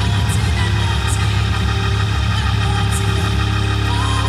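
Hammond organ playing a loud, sustained, churning low chord with a full bass underneath, a few faint sharp high hits above it.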